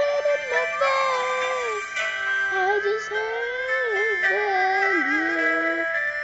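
A song: a lead voice sings a gliding, wavering melody over sustained backing chords.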